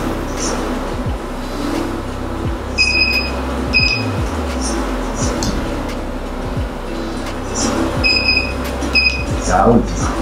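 Treatment equipment in a physiotherapy room beeping: two pairs of short, high electronic beeps, the beeps in each pair about a second apart and the pairs about five seconds apart.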